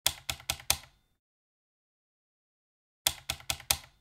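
Two quick runs of four sharp clicks, each run lasting under a second, the second starting about three seconds after the first.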